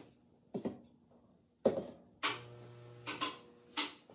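Glaze-fired ceramic ware knocking and clinking as pieces are set down and lifted from an electric kiln's shelf: a handful of light, hard knocks, with a short scraping, ringing slide of pottery on the shelf in the middle.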